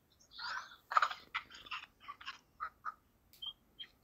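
A faint, thin, broken-up voice over a phone line, too garbled to make out the words.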